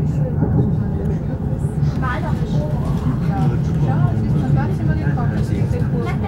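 Steady low rumble of a passenger train running, heard from inside the carriage, with indistinct voices of passengers talking over it.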